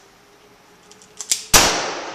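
A revolver fired single action: a couple of sharp clicks as the hammer is cocked, then one loud shot about a second and a half in, its report trailing off in a short echo.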